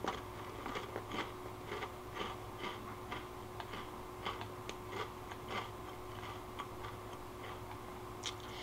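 Faint, irregular small clicks, two or three a second, over a steady low electrical hum in a small room.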